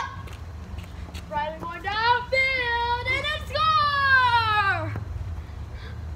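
Children's voices calling out in long, drawn-out cries that rise and fall, from about a second in until near the end, over a steady low hum.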